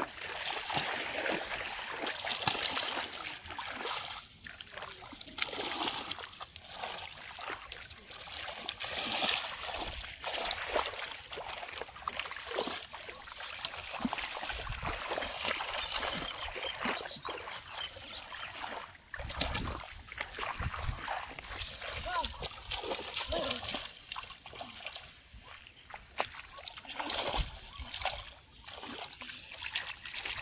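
Hands splashing and sloshing in shallow, weedy floodwater while grabbing at a catfish, with repeated uneven splashes and trickles of water.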